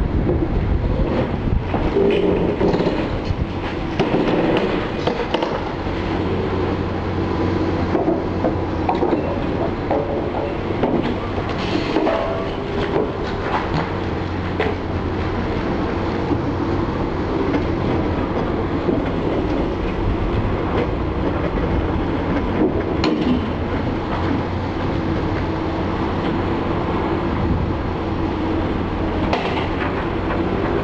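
Liebherr long-reach demolition excavator working, its engine and hydraulics running with a steady drone. Its demolition jaws crunch into concrete and brickwork, with scattered cracks and clatter of breaking masonry.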